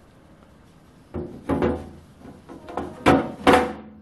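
Particle-board collet rack being set into an open steel toolbox drawer: a quiet second, then a few knocks and scrapes of wood against the metal, the loudest two near the end.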